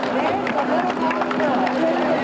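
A crowd of many voices talking and calling out at once over a steady low hum.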